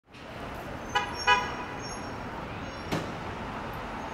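Steady street traffic noise with a vehicle horn giving two short honks about a second in, and a single sharp knock near three seconds.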